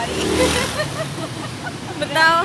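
Street traffic with voices talking: a short rush of road noise peaks about half a second in and fades, then people chatting over the steady street background.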